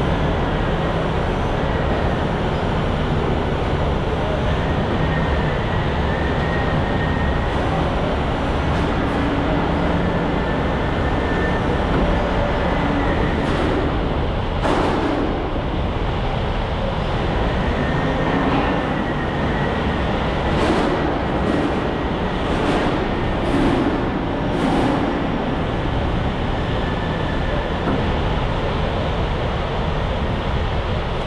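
Steady, loud rumble of heavy machinery running, with a faint high whine and a few short clicks or knocks in the second half.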